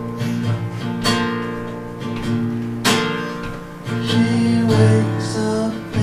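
Acoustic guitar strummed live in a slow rhythm, a strong strum about every two seconds with the chord ringing on between strokes.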